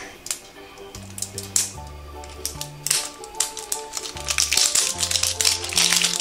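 Background music with a steady bass line, over crinkling and clicking as a small packet is worked open by hand.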